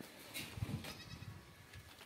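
A goat bleating faintly: one short, wavering call about half a second in.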